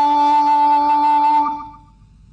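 A male Quran reciter's voice holding one long, steady chanted note, the drawn-out vowel at the end of a verse, which tapers off and stops about a second and a half in.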